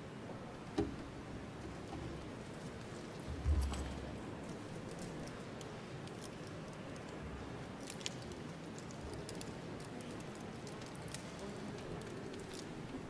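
Room ambience of a large, reverberant church with a seated congregation: a low background of faint voices and movement, with a few scattered knocks and clicks and a heavier low thump about three and a half seconds in.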